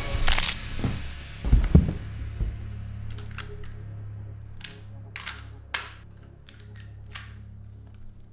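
A sharp hit, then heavy low thumps in the first two seconds, followed by a low steady drone of film score. Over it, from about four and a half seconds in, a semi-automatic pistol clicks sharply several times as it is handled.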